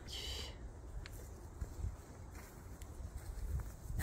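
Faint outdoor background: a low rumble with soft footsteps and light rustle, and a brief high-pitched chirp at the very start.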